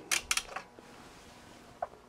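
A quick run of small sharp clicks from the controls of bench test equipment being worked, then a faint steady hum.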